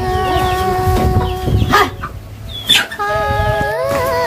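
Chickens clucking over a slow background melody of long held notes. The melody breaks off for about a second midway, with two short sharp sounds, then resumes.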